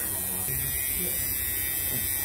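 Electric tattoo machine buzzing steadily as the needle works into the skin.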